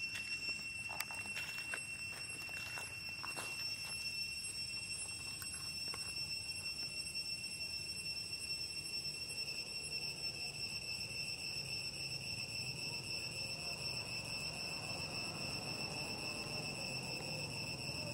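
Steady high-pitched insect drone, with a few soft clicks and rustles of dry leaves under a small macaque's feet in the first few seconds.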